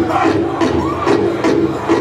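A powwow drum group sings a women's northern traditional contest song together over a big drum struck in a steady beat, about two and a half beats a second. High voices slide up and down over the beat.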